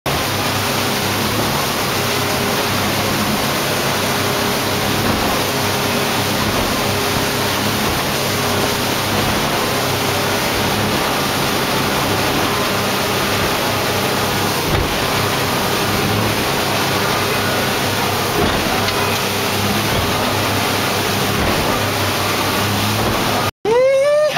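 Steady rush of wind and water with a low engine drone from a sport-fishing boat running at speed on open ocean. The sound breaks off abruptly near the end.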